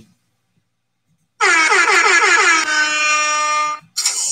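Air horn sound effect played once after a numbered card is pulled, starting about a second and a half in and lasting about two and a half seconds. Its pitch wavers at first, then holds steady before it cuts off.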